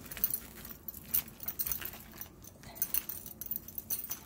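Metal handle rings of a woven handbag clinking and clicking irregularly as the bag is handled, with small rustles from the woven strips.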